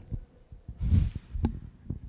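A man's short breathy exhale close to a microphone, like a sigh or a stifled laugh, about a second in, followed by a single sharp click. Soft low knocks sound throughout.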